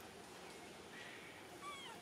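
Faint high-pitched calls of a long-tailed macaque, a short one about a second in and then a call sliding down in pitch near the end.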